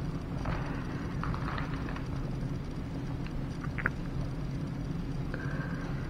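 Quiet room tone: a steady low hum with a few faint scattered ticks and clicks.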